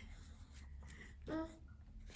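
Quiet room tone with one short spoken 'ừ' (a Vietnamese 'yeah') about a second and a half in.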